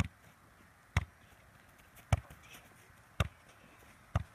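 A soccer ball being kicked up in keep-ups: four sharp thuds of foot on ball, about a second apart.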